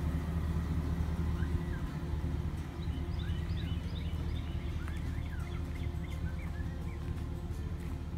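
A steady low hum, with small birds chirping over it from about a second and a half in.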